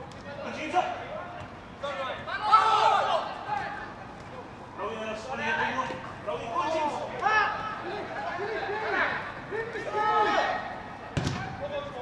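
Footballers shouting calls to each other on the pitch, one after another, and a single sharp thud of a ball being kicked near the end.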